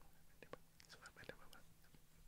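Near silence: quiet studio room tone with a faint steady hum and a few faint small clicks.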